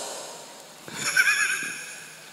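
A high, wavering vocal squeal about a second long, starting about a second in.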